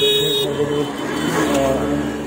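Busy street market background noise, with a long held pitched tone near the start and another, lower one in the second half.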